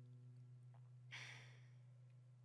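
Very quiet tail of a kora song: the instrument's last low notes die away, and about a second in a short sigh sounds close to the microphone.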